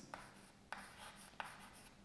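Chalk writing on a blackboard: faint scratching of the chalk with a few light taps as symbols are written.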